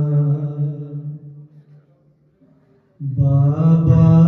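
Unaccompanied male voice chanting a Shia noha (lament): a long held note fades away, a short pause follows, and the chant comes back loudly about three seconds in.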